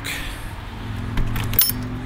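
Pickup truck engine idling with a steady low hum, with a couple of faint crunches on gravel.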